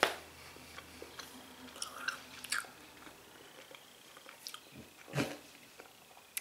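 A person chewing a mouthful of chewy dried pineapple ring with the mouth closed: faint, irregular wet mouth clicks, with a slightly louder sound about five seconds in.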